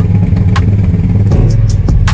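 Pickup truck engine running loud and steady at low revs, heard from inside the cab.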